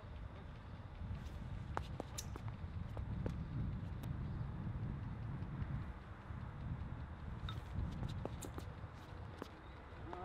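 Faint outdoor background: a low, steady rumble with scattered light clicks and scuffs from a discus thrower's shoes pivoting and stepping on the concrete throwing circle.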